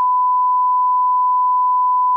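Colour-bars test tone: one steady, pure electronic beep held at a single unchanging pitch.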